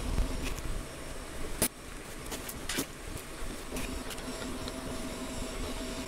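Elegoo Neptune 4 Pro 3D printer running its automatic bed-leveling probe routine. Its stepper motors hum steadily as the print head moves between probe points, with a sharp click about a second and a half in.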